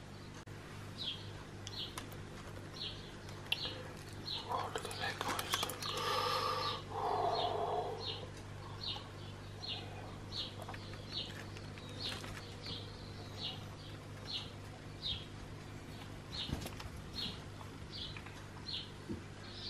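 A bird chirping one short, high note over and over at an even pace, a little more than once a second, over a steady low hum. A louder stretch of sound comes about five to eight seconds in.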